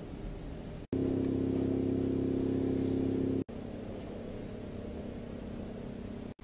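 A steady low hum. About a second in, a louder drone of several steady low tones cuts in abruptly, then cuts off just as suddenly about two and a half seconds later, leaving the quieter hum again.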